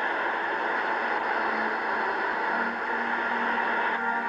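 Steady wash of surf on a beach, with a faint low music note coming in about halfway through.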